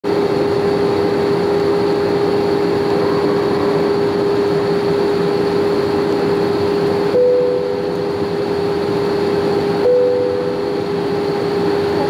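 Airliner cabin noise during descent: a steady rushing roar with a constant droning tone from the engines. Twice, about seven and ten seconds in, a brief higher steady tone rises above it.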